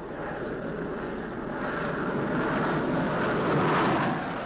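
Jet fighter engines running: a dense rushing noise that builds steadily louder, with faint falling whistles high above it.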